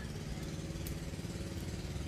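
A small engine idling steadily, a low even hum, with one faint snip of scissors a little under a second in.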